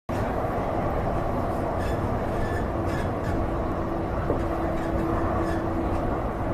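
Subway train running, heard from inside the passenger car: a steady low rumble with a steady hum that comes in about three seconds in.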